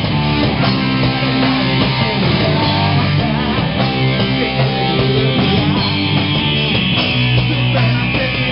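A live rock band playing at full volume, with electric guitars and drums, in a heavy-metal style.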